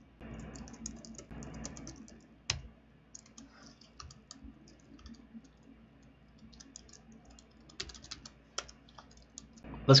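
Typing on a computer keyboard: quick, irregular keystroke clicks, with one louder click about two and a half seconds in.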